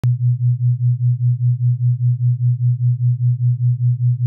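A low, steady electronic tone, pulsing evenly about six times a second, starts abruptly at the opening and holds on unchanged.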